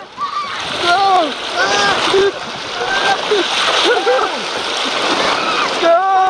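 Water rushing and splashing down a water slide under the sliding riders, with high, short yells and whoops from the riders over it throughout.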